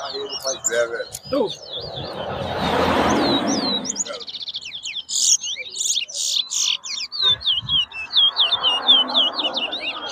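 Caged male towa-towa (chestnut-bellied seed finches) singing competition song: rapid runs of short, sweeping whistled chirps. A brief rush of noise comes about two to four seconds in, and there are murmuring voices near the end.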